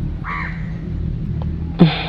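A short bird call, once about a quarter second in, over a steady low hum. Near the end comes a brief, louder sound that drops sharply in pitch.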